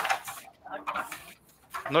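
A man's voice in faint, brief fragments, with a short sharp noise at the very start.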